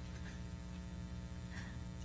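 Steady electrical mains hum, a low buzz with many even overtones, on the event's audio line.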